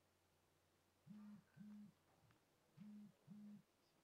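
Faint, near-silent room tone broken by four short low buzzes in two pairs, each starting with a quick rise in pitch and ending with a quick fall.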